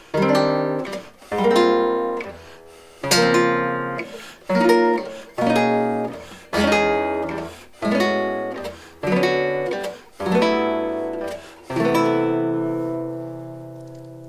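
Nylon-string classical guitar playing a progression of close-voiced chords through the cycle of fourths: about ten chords, each struck and left to ring, roughly a second or so apart. The last chord is held and fades out near the end.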